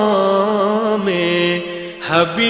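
One voice singing an unaccompanied devotional chant in long held notes that step down in pitch, softening near the end.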